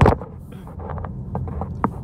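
Steady low rumble of a car heard from inside the cabin, waiting in traffic, opened by a sharp knock as the phone camera is handled and set in place; a couple of faint small clicks follow near the end.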